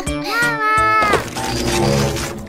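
A high, drawn-out cartoon-style vocal cry, held for about a second and then dropping away in pitch, over children's background music with a steady beat.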